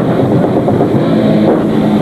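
Black metal band playing live: distorted guitars and drums in a dense, loud, unbroken wall of sound, heard from the crowd.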